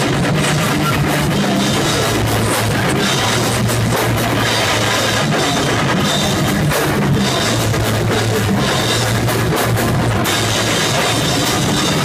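Live rock band playing loud: electric guitar, bass guitar and a drum kit together, a dense, steady wall of sound with constant drum hits.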